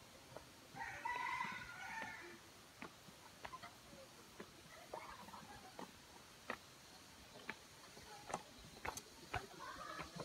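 A rooster crowing faintly about a second in, with a fainter call around five seconds. Scattered sharp clicks and knocks, from steps and fittings on a wooden plank rope bridge.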